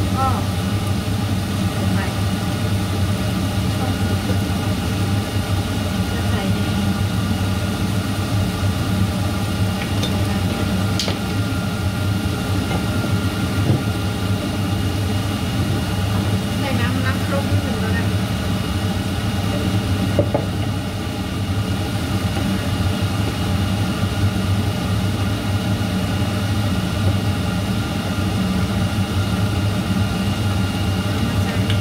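Chopped long beans, chillies and garlic sizzling in oil in a nonstick frying pan, with a wooden spatula stirring now and then, over a loud steady low mechanical hum.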